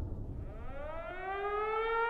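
Civil defense siren winding up: its tone starts about half a second in, climbs in pitch and levels off into a steady wail.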